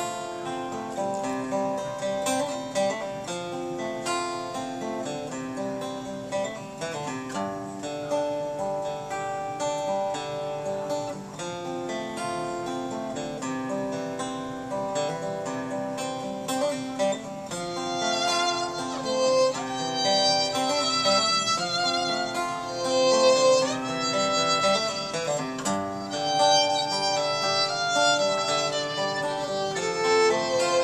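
Acoustic guitar and fiddle playing a tune together: the guitar picks a steady accompaniment while the bowed fiddle carries the melody. The music gets louder in the second half as the fiddle comes forward.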